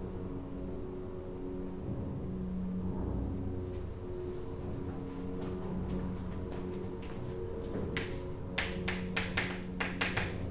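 Chalk tapping and scraping on a blackboard in a quick run of strokes near the end as a word is written, over a steady low electrical hum.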